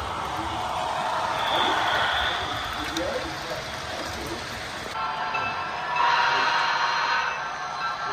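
A model train running on the layout track, mixed with indistinct chatter of voices in the room; the sound gets louder about six seconds in.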